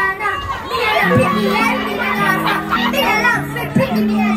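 A young boy's high voice through a microphone and PA, chanting or talking over a music backing track with long held bass notes, with crowd voices around.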